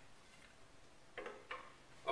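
Near silence with two faint light wooden taps, a little over a second in and about half a second apart, as a wooden chair side rail is handled against the back post.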